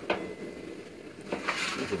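Metal grill tongs clinking lightly against the grill grate and an aluminium foil pan while a corn cob is lifted off the grill: a couple of faint clicks, one at the start and one about a second and a half in.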